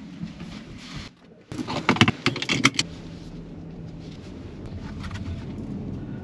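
A quick run of sharp clicks and rattles about two seconds in, then a steady low rumble from the Toyota Corolla Cross.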